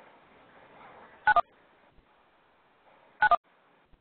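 Telephone-line beeps on a teleconference audio line, twice about two seconds apart: each is a quick two-note falling beep over faint line hiss. Typical of callers hanging up and leaving the conference call as it ends.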